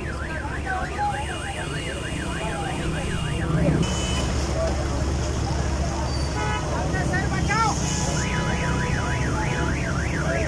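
A car alarm cycling through its tones: a fast rising-and-falling warble that stops early, other beeping and sweeping tones midway, then the warble again near the end, over the chatter of a crowd.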